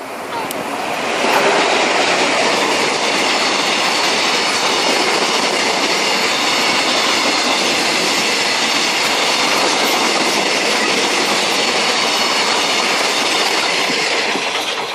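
Freight train passing through a station without stopping: an electric locomotive arrives about a second in, followed by a long string of cement tank wagons. Their wheels rolling over the rails make a loud, steady noise.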